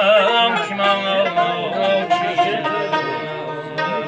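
Live Tajik folk song: a male voice singing with wavering, ornamented pitch near the start, over a plucked string instrument.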